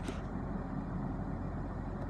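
A steady low hum and rumble inside the car's cabin, with a short click right at the start.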